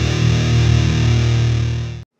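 Intro music with a distorted electric guitar, loud and sustained, cutting off suddenly at the end.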